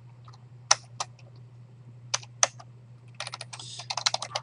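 Computer keyboard typing: a few scattered keystrokes, then a quick run of keys near the end. A steady low hum lies under it.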